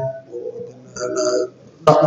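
Speech only: a man lecturing. After a phrase ends, there are two short, quieter voiced sounds between phrases, and then the talk resumes near the end.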